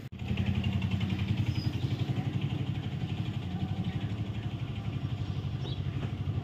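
Small vehicle engine running steadily under load, with a rapid low throb.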